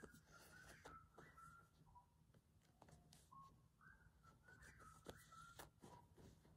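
Faint, soft whistling: a string of short, steady notes stepping up and down in pitch, over quiet rustles of calico fabric and thread being handled during hand-sewing.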